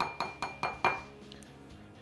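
A utensil knocking and scraping against a ceramic mixing bowl: about five quick clinks in the first second, the bowl ringing briefly after them, then quieter scraping.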